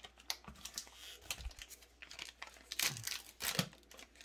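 Pokémon trading cards being handled and stacked on a playmat: irregular clicks, taps and short slides of card stock, louder in the second half.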